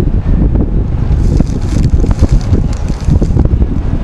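Wind buffeting the camera microphone: a loud, uneven low rumble, with a brighter hiss joining in from about a second in until shortly before the end.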